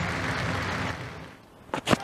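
A steady crowd noise that fades away over the first second or so, then the sharp crack of a cricket bat striking the ball near the end.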